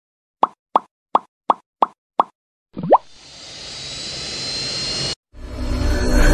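Edited-in intro sound effects: six short pops in quick succession, nearly three a second. Then comes a quick rising swoop and a whoosh that swells in loudness and cuts off suddenly. Dense music starts just before the end.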